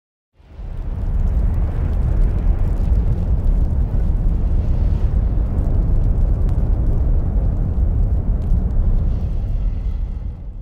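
Intro sound effect: a deep, steady rumbling noise with faint crackles, setting in just after the start and beginning to fade near the end.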